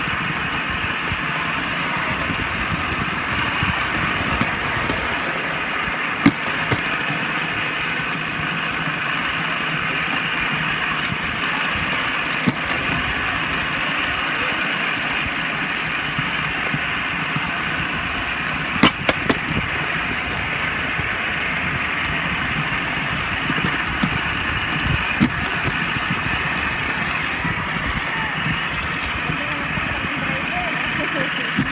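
Rail trolley rolling along a railway track: a steady grinding rumble of its wheels on the rails, with a few sharp clicks along the way, the loudest about two-thirds of the way through.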